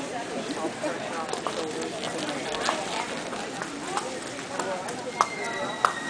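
Horses' hooves on the dirt footing of a large indoor show arena, heard under a murmur of spectator voices, with scattered sharp clicks. A thin steady high tone comes in near the end.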